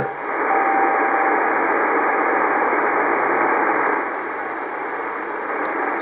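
Shortwave receiver hiss on 21.150 MHz in CW mode, with a faint steady tone from an NCDXF/IARU beacon for a bit over a second about half a second in. The hiss drops somewhat about four seconds in.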